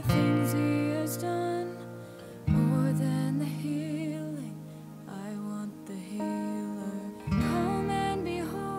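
Steel-string acoustic guitar fingerpicked with a capo on the third fret, sounding in E flat, letting open strings ring. Fresh chords are struck at the start, about two and a half seconds in, and again near the end.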